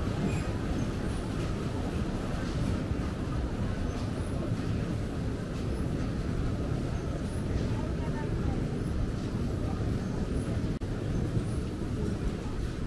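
Outdoor street ambience in a pedestrian square: a steady low rumble with indistinct voices of passers-by in the background.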